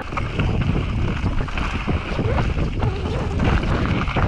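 Wind rushing over the microphone of a mountain bike's on-board camera, mixed with knobby tyres rolling fast over granite and loose dirt. It is a steady, rough noise, mostly low, with small irregular rattles through it.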